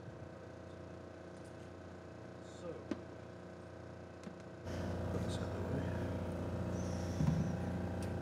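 Faint room tone of a hall heard through the sound system. A little over halfway through, the background steps up into a steady low hum and louder room noise as the lectern microphone is switched on.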